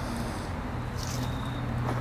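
Steady outdoor background noise with a low hum and a faint thin high-pitched tone; it cuts off suddenly at the end.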